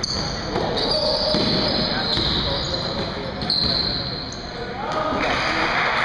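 Basketball bouncing on a hardwood gym floor during a game, with scattered sharp impacts, high sneaker squeaks and indistinct voices echoing around the hall.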